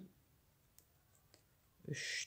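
Near silence with three faint clicks a little past the middle; a voice starts again just before the end.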